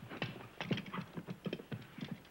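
Small hand air pump worked in quick short strokes with no needle fitted, a rapid, irregular run of clicks and puffs as the pump is cleared.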